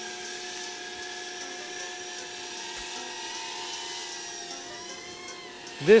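A steady electric motor whine made of several held tones, sagging slightly in pitch about five seconds in.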